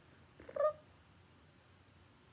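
A single brief, high-pitched call about half a second in, over quiet room tone.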